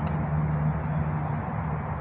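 Steady low drone of nearby highway traffic, with a faint steady insect buzz above it.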